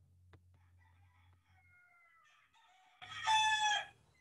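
A bird call: a single loud, pitched call lasting just under a second near the end, after about three seconds of low background with faint thin tones.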